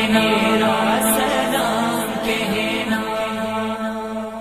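Chanted vocal music: a voice holding long, drawn-out notes over a steady low drone, easing slightly in level near the end.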